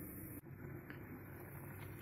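Faint steady kitchen room tone with no distinct sound, broken by a short edit about half a second in.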